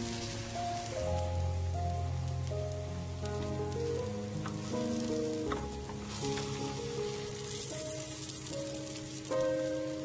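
Egg-battered round zucchini slices (hobak-jeon) sizzling in cooking oil in a frying pan, with background music playing over it.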